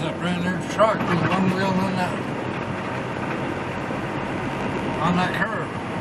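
Steady engine and road drone inside a moving truck's cab, with an indistinct voice in the first two seconds and again briefly about five seconds in.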